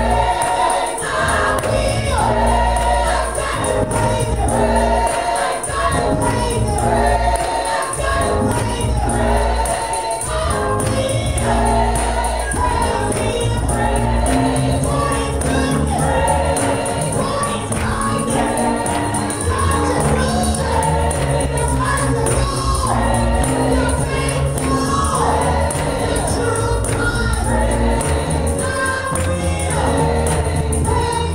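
Gospel worship team singing together in harmony, with a tambourine shaken along and a keyboard accompaniment carrying a steady bass line.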